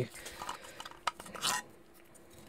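3D-printed plastic parts handled and rubbed together: soft scuffs and scrapes, the clearest about one and a half seconds in.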